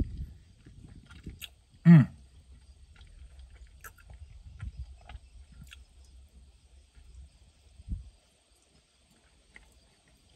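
A person chewing a soft protein brownie, with quiet mouth noises and small clicks, and a short 'mmm' about two seconds in. A brief low thump comes near the end.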